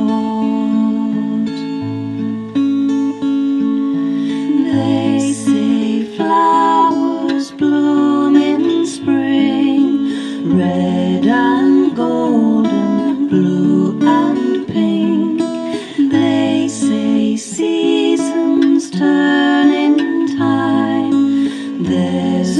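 Instrumental break in a slow song: acoustic guitar playing chords under a sustained melody line, with low bass notes changing every couple of seconds.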